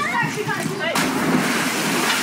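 A person plunging into a swimming pool about a second in: a sudden splash followed by a second of spraying, churning water.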